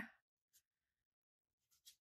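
Near silence: room tone, with a faint tick about half a second in and a few faint ticks near the end.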